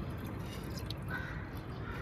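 Water trickling faintly from a plastic jug into a car's coolant overflow reservoir as it is topped up.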